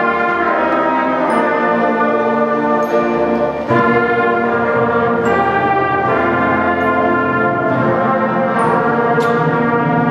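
A school concert band playing, brass and saxophones holding full sustained chords. The sound dips briefly and a new chord comes in together about four seconds in.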